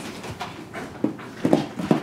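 Puppies at play: a string of short dog noises mixed with knocks and scuffles as they tussle over a plastic jug in a wicker basket. The loudest sounds come about a second and a half in and again just before the end.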